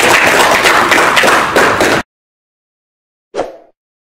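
Audience applauding in a hall, cut off abruptly about halfway through by an edit. A brief, fading burst of sound comes near the end.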